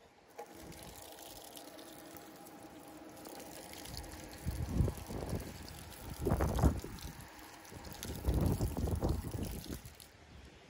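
Water running from a push-button poolside foot shower, starting about half a second in and splashing onto the stone paving. Three louder bursts of noise come in the second half.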